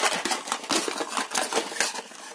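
Handling noise as an RC car speed controller and its wires are lifted out of a small cardboard box: a dense, irregular run of rustles and small clicks that eases off near the end.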